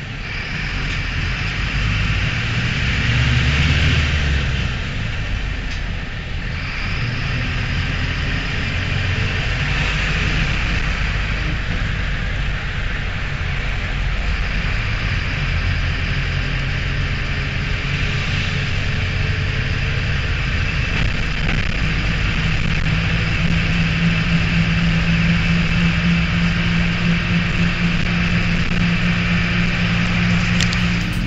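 Mercedes-Benz LO-914 minibus's OM904 electronically injected diesel engine heard from inside the moving bus, with road noise. Its pitch rises and falls with speed, then settles to a steady note over the last several seconds.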